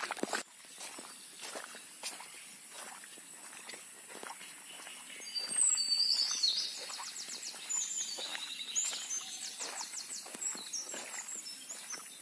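Footsteps on a dirt footpath, about two steps a second. From about five seconds in, a bird calls with high chirps and quick trills over a faint steady high tone.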